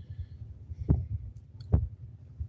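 Handling noise on a hand-held phone's microphone: a low, uneven rumble with two dull thumps, about a second in and again near the end.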